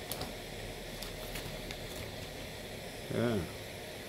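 Small butane-propane camping stove burning under a stainless steel pot of water that is just coming to the boil: a steady hiss with a few faint ticks.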